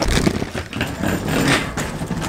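Rattling, rumbling noise of a wheeled suitcase rolling over cobblestones, with footsteps.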